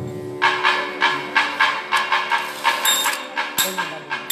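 Percussion playing a fast, even beat of sharp strikes, about three to four a second, starting about half a second in over a faint steady tone.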